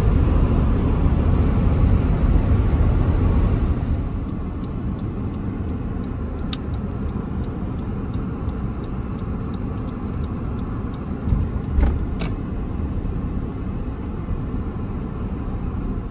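Road and engine noise inside a moving car's cabin, heavier for the first few seconds at highway speed and dropping after about four seconds as the car slows. A light, regular ticking, about two a second, runs through the middle, and two short thumps come about three-quarters of the way through.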